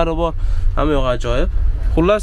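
A man's voice talking in two short phrases, over a steady low rumble.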